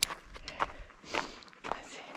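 Footsteps crunching on hard-packed, icy snow, a step about every half second.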